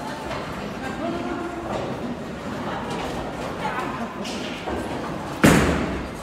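Indistinct voices in a large hall, then, near the end, a single heavy thud of a bowling ball landing on the wooden lane as it is released, ringing briefly in the room.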